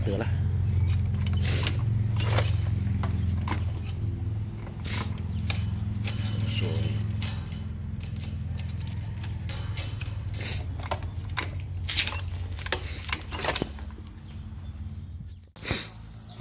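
Yamaha 110 SS two-stroke engine idling with a steady low hum, just after being kick-started. Keys rattle and click on the ignition over it.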